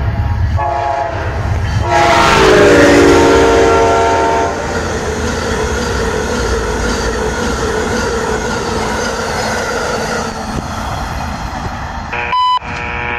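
Amtrak Acela high-speed trainset sounding its horn: a short blast near the start, then a long, loud blast about two seconds in that drops in pitch as the train passes. Then the steady rush and wheel noise of the cars going by at speed, easing off near the end.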